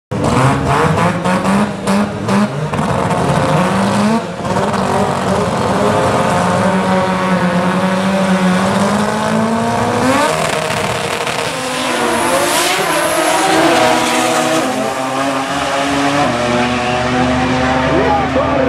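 Two drag-racing cars at the starting line, engines revving with a rapid string of pops. About ten seconds in they launch: the engines run at full throttle, pitch climbing and dropping back with each gear change.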